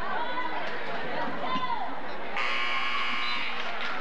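Gymnasium scoreboard buzzer sounding once, a steady harsh tone lasting about a second and starting a little past halfway, over the chatter of a crowd in the stands.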